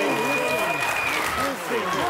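Studio audience applauding, with loud voices shouting over the clapping.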